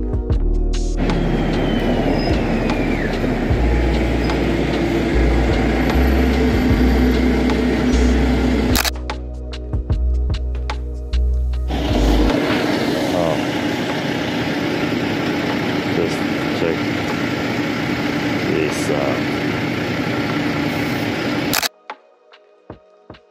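City street noise with a city bus going by on cobblestones, its engine running, under background music. It starts about a second in, drops out briefly around the ninth second, and cuts off just before the end.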